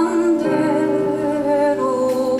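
A voice humming a slow, wavering melody over sustained piano chords, the chord changing about half a second in.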